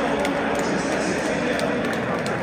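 Steady noise of a large football stadium crowd: many voices at once, with no single voice standing out.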